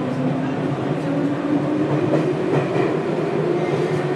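Tokyu 1000 series electric train accelerating away from a station, heard from inside the car by the doors. The traction motor whine rises steadily in pitch over the rumble of the wheels on the rails.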